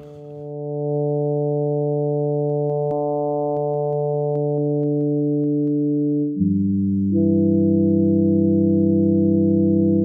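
Yamaha SY77 FM synthesizer pad played dry, without reverb: a held chord swells in slowly over about a second, then changes to a new chord about six seconds in, with another note shift a second later. The patch is built from sine-wave operators with oscillator sync switched off, so the operators run free.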